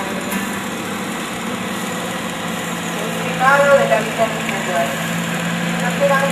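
Small car's engine running steadily at a crawl, a low even drone that firms up about halfway through. A voice is heard briefly about three and a half seconds in.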